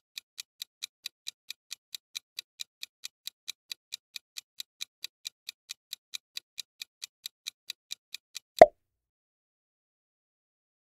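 Countdown-timer ticking sound effect, about four and a half even ticks a second, stopping after about eight seconds. It is followed by one louder short pop that marks the end of the countdown.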